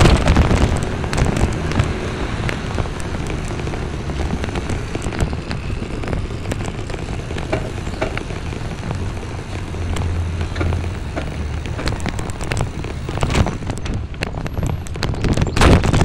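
Wind buffeting the microphone of a camera on a moving vehicle, with a low rumble and dense crackling and knocking from the mount and cloth rubbing; a few louder bursts near the end.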